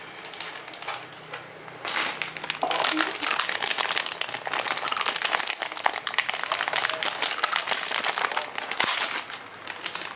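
Thin plastic wrapper crinkling and crackling as it is torn open and handled, a dense crackle starting about two seconds in and running until near the end.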